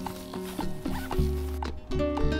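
Instrumental background music with a steady beat and sustained melodic notes.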